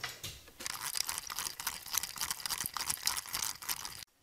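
A small fishing reel being wound fast: a dense run of rapid clicks and rattles starting about half a second in.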